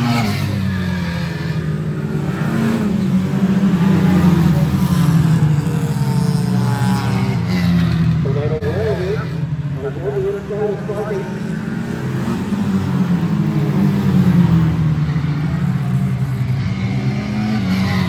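Engines of a pack of small saloon racing cars running hard around an oval, their pitch rising and falling as they accelerate out of the bends and lift for the turns.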